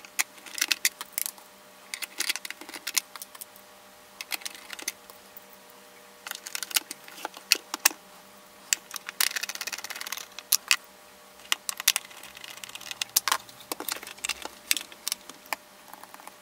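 Screwdriver and hands working on a plastic oscilloscope case: scattered clicks, ticks and light plastic knocks as the back-case screws are driven in and the unit is handled, with a short scraping sound about nine seconds in.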